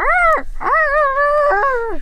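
A child's high-pitched, wordless whine, as of a voice muffled face-down: a short rise-and-fall, then a longer held call with a small upward step near the end.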